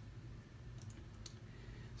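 A few faint clicks of a computer mouse around the middle, as an image is selected and opened on screen, over low room hum.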